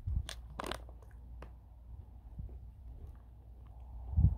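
A man chewing a mouthful of MRE granola with milk and blueberries: a few sharp crunches in the first second and a half, then quieter chewing.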